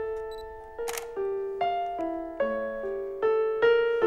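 Piano improvisation, a slow line of single notes and chords struck about every half second, each ringing and fading. A camera shutter clicks once about a second in.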